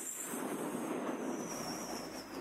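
Steady background hiss of a large hall in a pause between speech, with a faint high-pitched whine that slowly drops in pitch.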